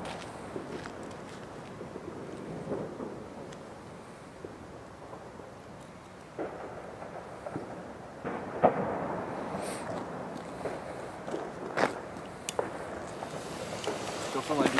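Scattered firecracker bangs, sharp and none very loud, over a low background hiss. The loudest crack comes about eight and a half seconds in, and others follow near ten, twelve and twelve and a half seconds.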